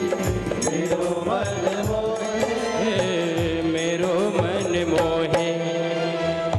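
Live devotional music: a held, slowly gliding melody over steady low drum beats.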